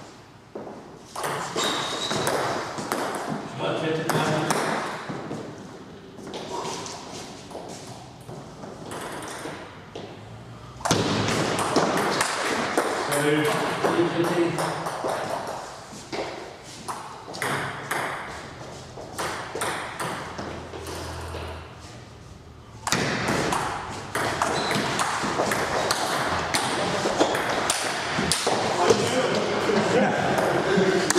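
Table tennis rallies: the ball clicking back and forth off the paddles and the tabletop in quick, irregular ticks, in several bursts of play with short pauses between points.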